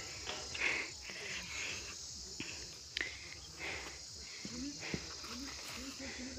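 Steady high chirring of insects, with faint distant voices talking in the second half and a single sharp click about halfway through.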